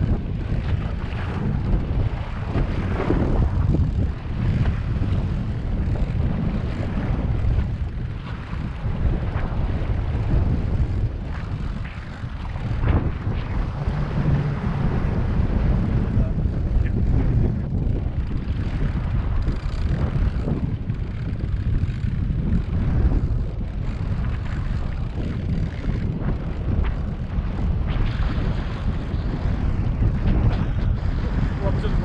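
Outboard boat motors running steadily at trolling speed, a continuous low rumble, with wind buffeting the microphone in uneven gusts.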